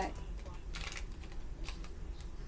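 Tarot cards being handled and laid down on the table: a few light, short flicks and taps of card on card.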